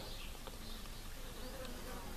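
Faint steady background hum, with no distinct events.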